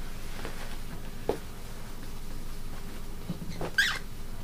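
Cloth towel rustling and shuffling as a cockatiel is caught in it by hand, with a short rising cockatiel call near the end.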